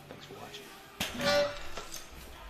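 Heavily loaded deadlift bar with bumper plates dropped onto wooden blocks, landing in a sudden loud crash about a second in, over background hip-hop music.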